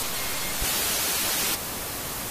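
TV static hiss, a steady noise like an untuned set. About half a second in it turns louder and brighter for roughly a second, then drops back abruptly. A faint brief high tone sounds just after the start.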